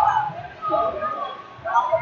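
Two short, high shouted calls from people around a wrestling mat, one about half a second in and one near the end.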